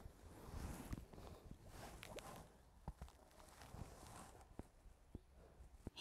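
Near silence: faint outdoor ambience with scattered soft clicks and rustles.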